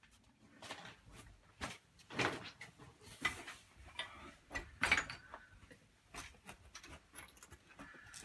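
Scattered knocks, clicks and short scrapes of hands-on renovation work as old wall tiles are being stripped, loudest about two seconds and five seconds in.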